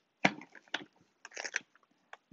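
Pelican R60 plastic hard case being opened: its latches click open and the lid lifts, giving a sharp click about a quarter second in, another soon after, and a short cluster of clicks about a second and a half in.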